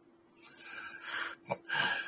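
A man's audible breath into a close microphone, a long noisy exhale or sigh, with a short click about one and a half seconds in.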